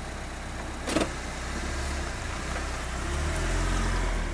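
Car engine idling with a steady low rumble. A single sharp click comes about a second in, and the rumble grows a little louder near the end.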